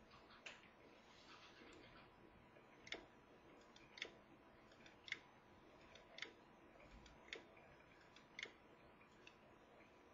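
A split-flap clock's flaps flipping over, a faint click about every second, six in a row from about three seconds in. The clock is stepping forward minute by minute to catch up to the correct time after being unplugged, driven by its battery-backed real-time clock circuit.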